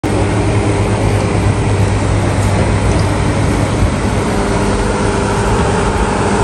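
Steady indoor shopping-mall ambience: a dense, even wash of noise with a low hum underneath and no distinct events.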